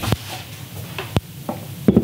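A few knocks and clunks as the metal Z-axis column and spindle assembly of a Taig micro mill is handled and set down on a wooden workbench. The strongest clunk comes just past the middle.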